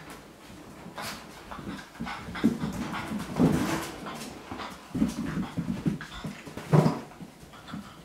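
Small puppies play-fighting, giving short bursts of puppy noises over the sound of scuffling, with the sharpest burst near the end.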